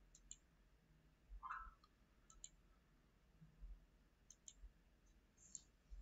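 Faint computer mouse clicks, mostly in quick pairs, spaced out over near silence, with a brief faint tone about a second and a half in.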